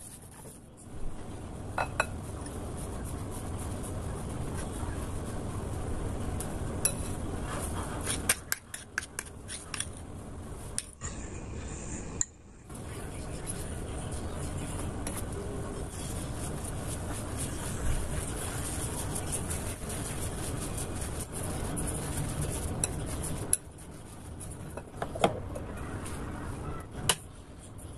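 A wire balloon whisk stirring flour and a thick yeast starter in a glass mixing bowl: a steady scraping rustle with scattered clinks of the wires against the glass. There is a short break near the middle.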